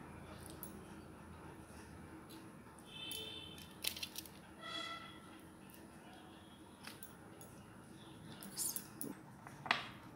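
Faint, scattered clinks of a steel spoon against a small glass bowl and steel plate as green chutney is spooned into slit paneer pieces, over a low room hum. Two faint short high tones sound near the middle.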